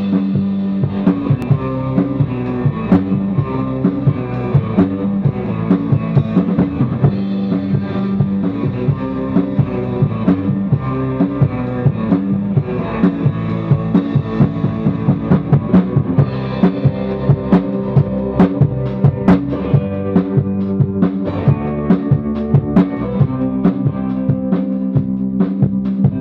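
A band playing live in the studio: a drum kit keeps a steady beat under electric guitars.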